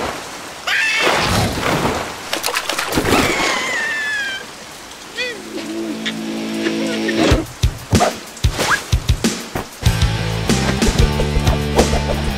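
Cartoon soundtrack: rain falling while a cartoon larva makes high, squeaky wordless vocal sounds for the first few seconds. Then background music comes in, with a run of sharp clicks and a pulsing beat in the last few seconds.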